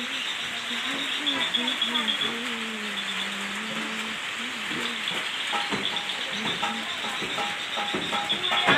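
Steady sizzling of food frying in woks over wood fires, with a person's voice under it through the first half.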